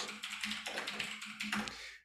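Computer keyboard typing: a quick run of key clicks that grows fainter toward the end.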